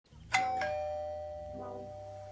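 Two-note ding-dong doorbell chime: a higher note, then a lower note about a quarter second later, both ringing on and slowly fading.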